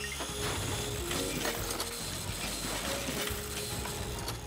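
Cartoon sound effect of a workshop machine grinding: a steady mechanical whirr and rattle.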